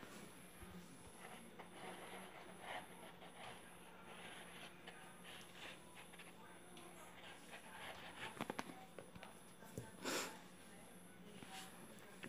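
Faint handling of paper and cardboard being pressed and smoothed down while glued: soft rustles and scrapes, a few light taps about eight and a half seconds in and a louder rustle about ten seconds in, over a low steady hum.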